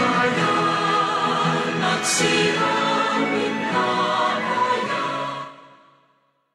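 Entrance hymn sung by a choir, ending and dying away in the last second.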